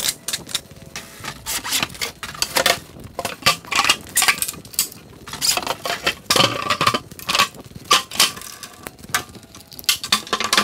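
Rapid, irregular clattering and knocking of plywood workbench parts being handled and fitted together, many sharp knocks in quick succession.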